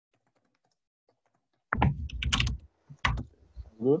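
Typing on a computer keyboard: faint scattered keystrokes, then a louder cluster of key clatter about two seconds in and another short burst about a second later.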